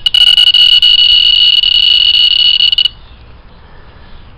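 Alpha particle detector's audio counter sounding a high beep for each count, at so fast a rate that the beeps run together into an almost continuous tone, which cuts off suddenly about three seconds in. The high count rate marks strong alpha activity from the radon daughters (polonium-214) collected on the metal lid held at the probe.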